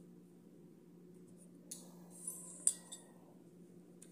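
Small spring-loaded thread snips cutting cotton yarn: a few light snipping rustles from about a second and a half in, ending in one sharp click near three seconds in.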